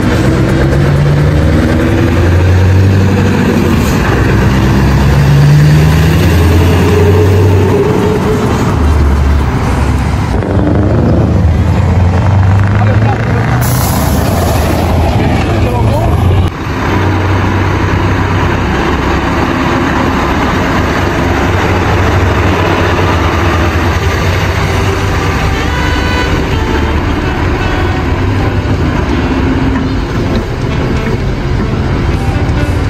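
Scania heavy trucks' diesel engines running as they pull away and drive past, with the engine note rising and falling. The sound changes suddenly at edits about ten and sixteen seconds in.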